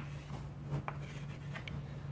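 Chalk writing on a chalkboard: a few short, faint strokes and taps as an arrow is drawn.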